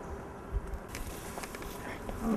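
A few dull thumps of footsteps and scuffling on grass, over a steady low outdoor background noise.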